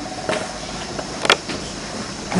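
A pause in a man's speech, filled with steady background noise and two short clicks, the sharper one about a second and a quarter in.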